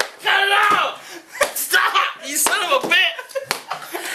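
Three sharp smacks about a second apart as a long padded bat strikes a person, over loud shouting and laughing voices.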